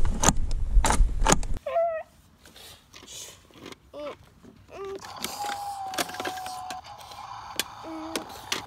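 Clicks and clatter of a plastic toy garbage truck and its mini bins being handled, over a low rumble that cuts off abruptly about a second and a half in. After that come quieter clicks, a few short pitched sounds and a steady tone held for over a second near the middle.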